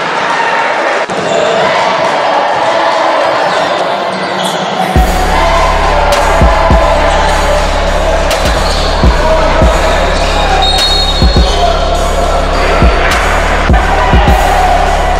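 A basketball being dribbled on a hardwood gym floor, a series of sharp thumps at uneven spacing over a steady din of the gym, with a low hum that comes in about five seconds in.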